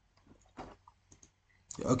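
A few faint, short computer mouse clicks, the loudest about half a second in.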